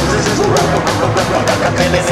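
Psychobilly band recording in an instrumental stretch: guitar over a fast, steady drum beat and bass line.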